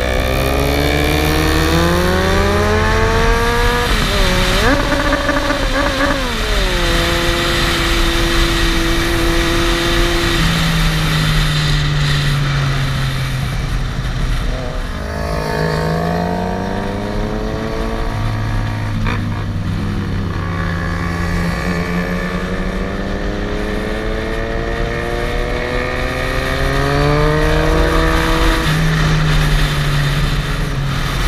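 Motorcycle engine heard from onboard, accelerating up through the gears with quick upshifts about four and six seconds in, holding a steady pitch, easing off, then pulling up through the revs again through the second half, over a rush of wind.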